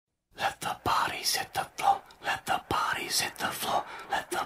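Indistinct low voices talking, with a couple of sharp knocks.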